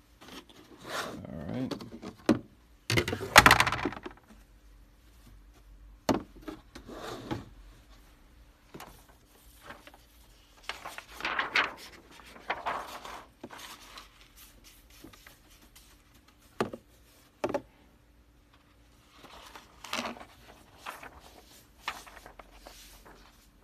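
DTF transfer film being handled and tilted over a powder tray as it is powdered: irregular crinkling and rustling of the plastic sheet in several bursts, with a few short sharp clicks.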